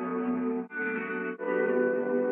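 Background music: sustained chords that change twice, about every two-thirds of a second.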